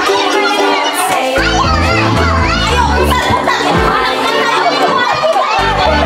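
Many young children shouting and calling out together, with loud music and a heavy, stepping bass line running underneath.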